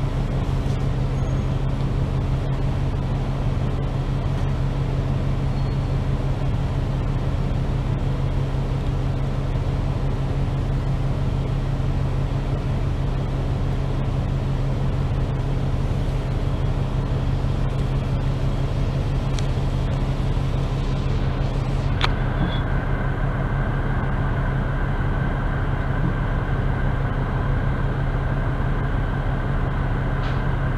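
Double-decker bus idling at a standstill, heard from inside: a steady low engine hum. About two-thirds of the way through there is a click, and a steady higher whine joins the hum and carries on.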